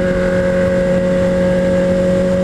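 Honda Hornet's inline-four engine holding a steady drone while cruising at about 107 km/h on the highway, under a steady rush of wind on the helmet-mounted microphone.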